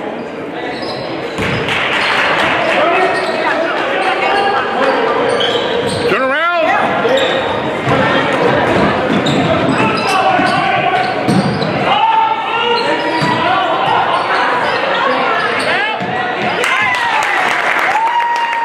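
Basketball game sounds in a gymnasium: many voices of spectators and players calling over one another, with the ball bouncing on the hardwood floor as play moves up the court.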